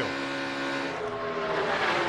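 NASCAR Cup Series stock cars' V8 engines running at racing speed, a steady multi-toned drone. The engine note drops slightly in pitch in the second half.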